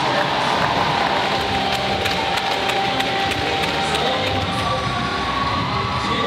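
Large crowd cheering steadily in a sports hall, with music playing underneath.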